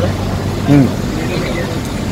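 Street traffic noise: a steady haze with a constant low hum, broken by a brief spoken syllable.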